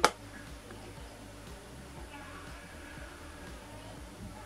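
Quiet room tone: a low, steady hum with faint, indistinct background sounds.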